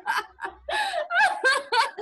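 Women laughing deliberately in short, choppy 'ha ha' bursts during a laughter-yoga exercise, heard over a video call, with a brief lull about half a second in.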